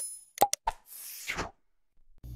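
Sound effects for an animated subscribe-and-share button: short mouse-click pops, a pair about half a second in, followed by a swish of noise lasting about half a second.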